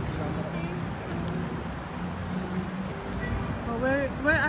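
City street ambience: a steady low rumble of traffic with a steady engine hum, faint distant voices, and a voice starting near the end.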